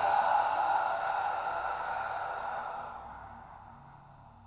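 A man's long, slow audible exhale, breathed out steadily and fading away by the end. It is the drawn-out exhale that closes a physiological-sigh breathing pattern (a double inhale, then a long exhale).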